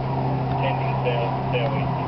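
Houseboat's engine running steadily at cruising speed, a constant low hum with wash noise under it. Short high chirps recur about twice a second over the hum.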